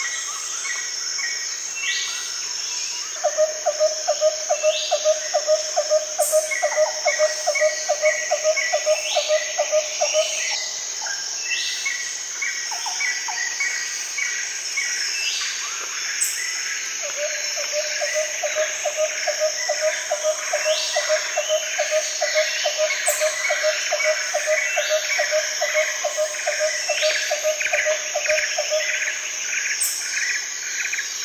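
Nature ambience of many birds chirping over a steady high insect drone, with two long runs of a rapidly repeated low call.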